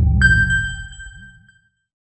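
An edited-in bell-like ding sound effect strikes once just after the start and rings out, fading over about a second and a half. Under it a low wavering hum dies away.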